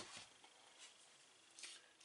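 Near silence: room tone, with a couple of faint, brief handling sounds of hands and paper on the work table.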